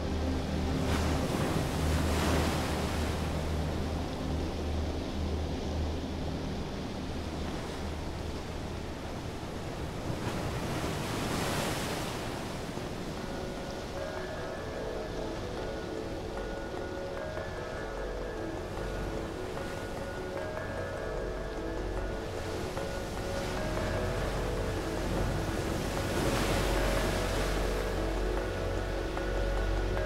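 Ambient airship soundscape: wind rushing in three slow swells over a steady low drone, with soft held synth chords filling in about halfway through.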